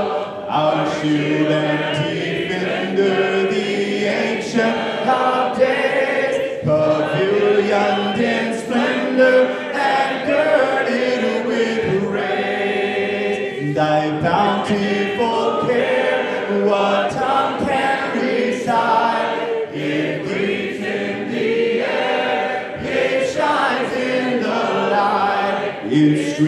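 Large congregation singing a worship song a cappella, many voices together, led by a man on a microphone.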